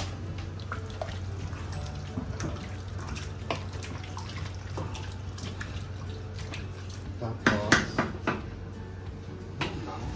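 Wooden spoon stirring chunks of pork through coconut milk in a metal pot, with wet sloshing and small scrapes, and a few louder knocks about three quarters of the way through. A steady low hum runs underneath.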